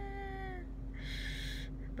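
A woman's mock-whiny wail, one drawn-out, slightly falling "wah" that fades about half a second in, followed by a short breathy sound about a second in.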